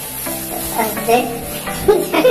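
Shiny gift-wrapping paper crinkling and rustling as a present is unwrapped by hand, over background music.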